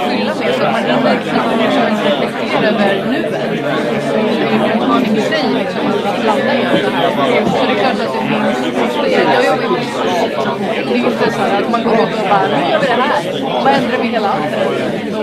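Many people talking at once in a large hall: an audience chatting in small groups, a steady hubbub of overlapping voices with no single speaker standing out.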